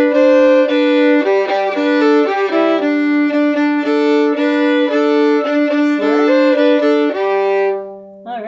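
Solo fiddle playing the A part of a Cajun-style two-step tune. The notes are bowed mostly one to a stroke, with two slurs, over a low open-string drone that sounds through much of it. A long final note is held and stops near the end.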